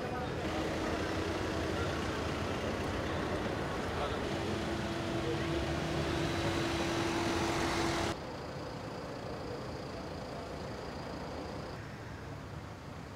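Street traffic: vehicles running and passing with a steady engine hum over a noisy background. The traffic noise cuts off suddenly about eight seconds in, giving way to a quieter steady background.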